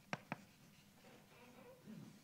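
Chalk writing on a blackboard: two sharp taps of the chalk against the board just after the start, then faint writing strokes.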